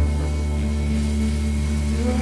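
Live experimental drone music: electric guitars, one played with a bow, hold sustained, overlapping tones over a deep, steady low hum.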